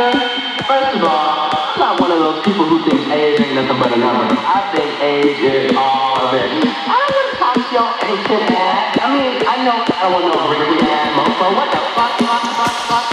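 House music played over a club sound system in a DJ set: a vocal line glides over a steady beat, with the deep bass mostly held back.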